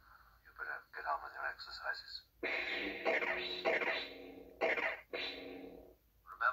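Star Wars film audio playing from the Hallmark Death Star tree topper's small built-in speaker. A voice is heard briefly, then from about two and a half seconds in there are three stretches of a steady buzzing hum.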